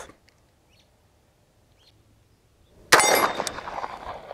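After near silence, a single shot from a 1911 pistol cracks about three seconds in. It is followed at once by the ringing clang of a steel target being hit.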